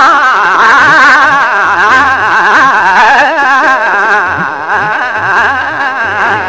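Male Hindustani classical voice singing a long held vowel, ornamented with fast, continuous oscillations in pitch (a gamak-style run), loud throughout.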